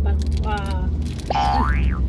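A cartoon-style 'boing' sound effect: one quick whistle-like glide rising steeply in pitch, about a second and a half in.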